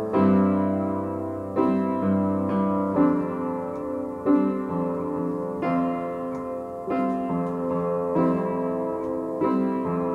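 Acoustic upright piano improvised slowly in a somber mood: chords struck about every second and a half, each left to ring and fade before the next, over a held low bass note for the first couple of seconds.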